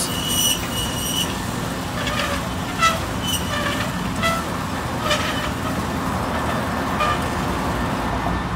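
CO-Z automatic sliding gate opener's electric motor running steadily, driving the chain as the gate slides closed. A brief high tone near the start and a few short high chirps sit over it.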